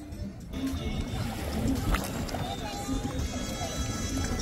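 Wind rumbling on the phone microphone, with background music and brief snatches of people's voices.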